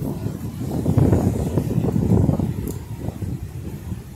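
Wind buffeting the microphone: a loud, irregular low rumble that swells about a second in and eases toward the end.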